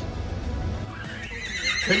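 A horse whinnying: one long, wavering, high call that starts about a second in, with music underneath.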